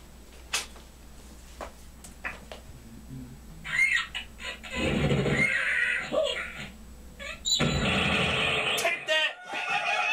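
Angry Birds game sounds from a laptop's speakers: cartoon bird cries and squeals, starting about four seconds in after a few seconds of faint clicks.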